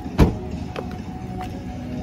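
A car door is shut with one solid thump about a quarter second in, followed by a couple of faint clicks.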